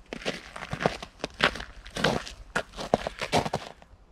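Irregular rustling and crackling handling noise, many short clicks and scrapes close to the microphone, from clothing and gear being moved.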